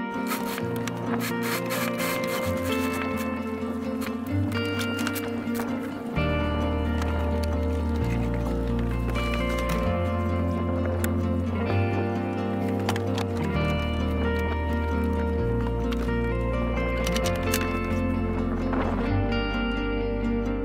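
Background music: a melody of plucked notes over a bass line that changes every second or two, the bass growing fuller and a little louder about six seconds in.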